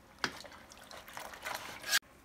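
Wet fabric being stirred and lifted with metal tongs in a stockpot of hot dye water: liquid sloshing and dripping, with a sharp knock about a quarter second in. A louder swish builds near the end and cuts off abruptly.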